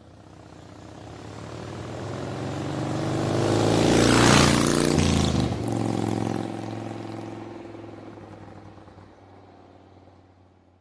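Outro sting sound effect: a swelling whoosh over a low steady drone. It builds to a peak a little before halfway through, then fades away.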